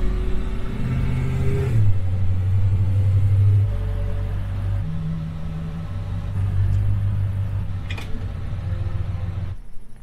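Ford Coyote 5.0 V8 in a 1976 F-150, heard from inside the cab: a steady low engine note that drops in pitch about two seconds in, then settles to idle. It cuts off shortly before the end.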